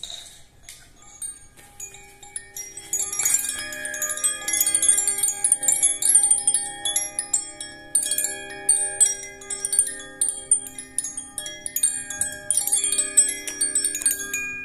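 Hand-held wind chime shaken continuously: a dense shimmer of bright tinkling strikes over several ringing tones that sustain and overlap. It starts faintly about a second in and is full by about three seconds.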